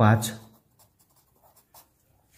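Pencil writing on a paper workbook page: a few faint, short strokes as a letter and a number are written out.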